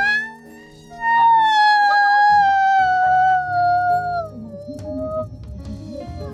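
A woman's loud, high-pitched wail, one long held cry of about three seconds that sags slightly in pitch, over soft background music.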